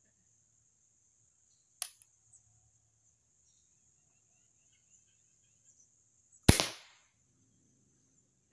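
A Killer Instinct Boss 405 crossbow being shot: a light click about two seconds in, then one loud, sharp snap of the string releasing about six and a half seconds in, dying away quickly.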